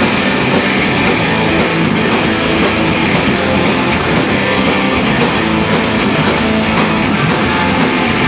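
Live noise-rock band playing loud: electric guitars and a drum kit, with cymbals struck several times a second in a steady beat.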